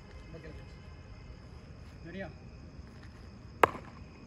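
Cricket bat striking a ball once, a single sharp crack near the end, with faint voices in the background.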